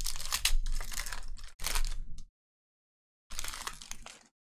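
Foil wrapper of a Panini Prizm football card pack being torn open, crinkling and crackling for about two seconds. A shorter rustle follows near the end.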